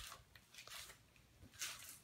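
Near silence with faint handling noise: a soft click right at the start and a brief hissy rustle about a second and a half in.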